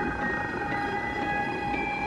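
Background music of sustained synth chords, the held notes shifting to new pitches near the end.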